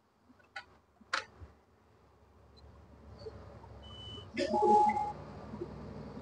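MAN bus instrument cluster giving electronic warning signals as the ignition comes on: a couple of faint clicks, then a short high beep about four seconds in and a louder chime tone right after it. The warnings flag malfunctions in the electrical system and air suspension, and a low hum rises beneath them.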